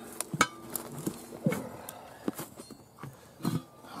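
Steel tire irons (spoons) clinking and knocking against a steel wheel rim as a tire is levered off it by hand. There are several sharp, irregular metal knocks, spaced unevenly a fraction of a second to about a second apart.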